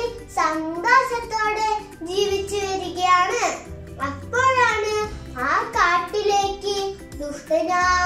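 A young girl telling a story in Malayalam in a lively sing-song voice, her pitch swooping up and down as she half-chants the lines.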